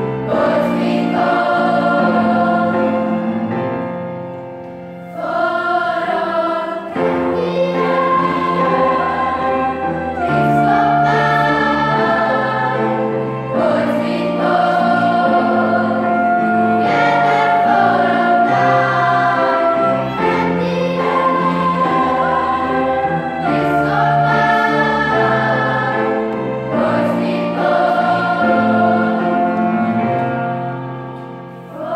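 Large youth choir singing in harmony, holding sustained chords that shift every second or two, with a brief drop in loudness about four to five seconds in.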